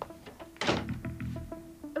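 A wooden front door is pulled shut with a single heavy thunk about two-thirds of a second in, over soft background music.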